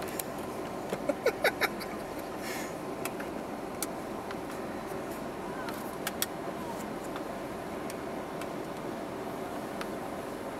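Steady hum of a car idling, heard from inside its cabin, with a quick run of sharp clicks about a second in and a few single clicks later.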